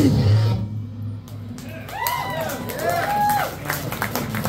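A live powerviolence band's full guitar, bass and drum sound stops abruptly about half a second in, leaving amplifier hum. From about two seconds in, several high whoops from the crowd rise and fall in pitch.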